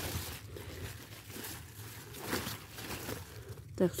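Radish leaves rustling and crinkling faintly as a hand moves through the plants, with a few light crackles.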